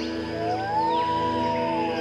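Background music: held chords under a smooth lead tone that glides up and then slowly falls over about a second and a half.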